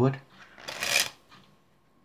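Playing cards dribbled from one hand into the other: a brief riffling patter of falling cards, about half a second long, a little over half a second in. The dribble is then stopped, leaving the deck split between the hands.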